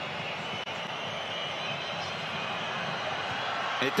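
Stadium crowd noise: the steady din of a large football crowd during a penalty kick. It grows a little louder near the end as the penalty goes in.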